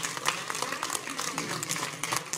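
Applause: a group of people clapping their hands.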